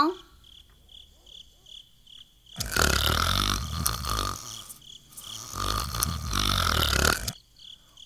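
Cricket chirping, a steady high pulse about three times a second, sets the night scene. Over it come two long, exaggerated snores, each about two seconds, performed by a puppeteer for the sleeping animals.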